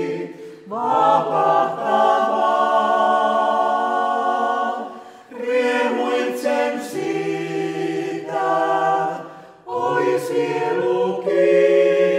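Small mixed vocal ensemble of women and men singing a hymn a cappella in harmony, in long held phrases with brief breaks between them about half a second, five seconds and ten seconds in.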